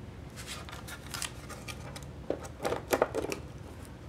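Paper towel rustling as it is wrapped around a small box and pressed down by hand, with several light clicks and taps about two and a half to three and a half seconds in.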